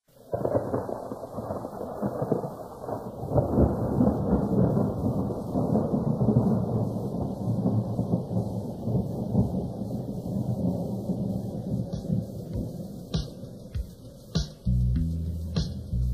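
Thunder rumbling with rain, starting suddenly and slowly fading over about fourteen seconds. Near the end, music comes in with steady bass notes.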